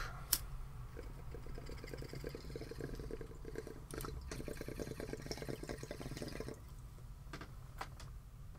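A lighter click, then about five seconds of fine crackling as a smoke is lit and drawn on, the burning tip crackling. Two more small clicks come near the end.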